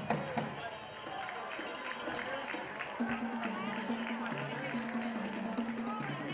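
Marching band playing on the field, with low brass holding stepped notes from about halfway through, over the chatter of nearby voices in the stands.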